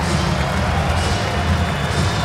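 Basketball arena crowd cheering, a steady dense noise at an even level.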